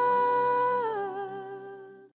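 A voice holds one long closing note over a sustained low chord. The note steps down once partway through, then fades out as the worship song ends.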